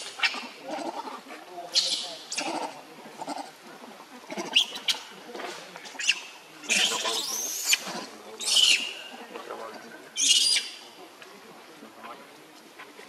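Baby macaque crying angrily: a series of short, shrill, high-pitched screams with softer lower whimpers between them. The longest cry, just past the middle, rises and falls in pitch.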